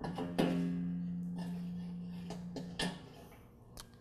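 A steel extension spring on a Troy-Bilt Pony lawn tractor's mower deck snaps onto its bracket and twangs, ringing with one steady pitched tone that fades away over about two seconds. A few light metallic clicks follow near the end.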